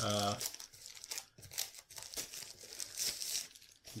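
Thin plastic wrapping crinkling and rustling as it is pulled off a hard carrying case, in irregular crackles that grow loudest about three seconds in.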